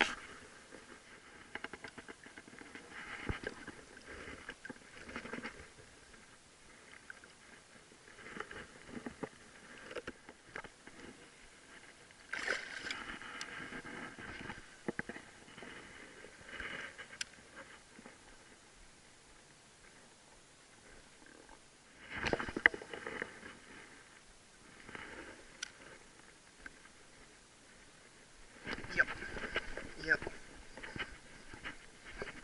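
Intermittent sloshing and splashing of shallow water around a wading angler, in irregular bursts, with a few sharp clicks in between.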